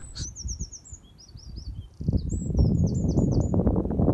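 Small birds chirping: many short, high, quickly sliding notes through the first three seconds or so. About two seconds in, a loud rough rustling noise starts and covers the low end.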